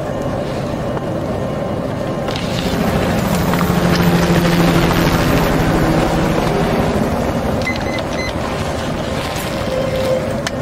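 A car's engine running, swelling louder for a few seconds in the middle and then easing off.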